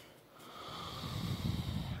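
A man breathing out audibly close to the microphone, a long exhale that swells in loudness over about a second and a half.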